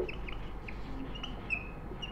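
Whiteboard marker squeaking in a string of short, high chirps as it writes, with a slightly longer squeak about one and a half seconds in.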